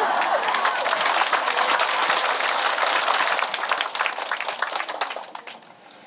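Large seated audience laughing and clapping together; the applause thins out and fades away near the end.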